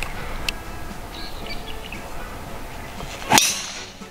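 Driver striking a golf ball off the tee: one sharp, loud crack near the end.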